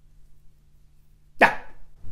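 A woman's single short, sharp exclaimed "yeah", coming after a pause of about a second and a half, with its pitch falling.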